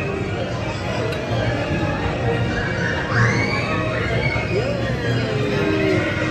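Music from a spinning teacup ride playing over crowd voices, with a high squeal that rises and falls about three seconds in.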